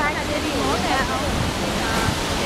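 Busy city street ambience: a steady noisy roar of traffic with the unclear chatter of passing people's voices.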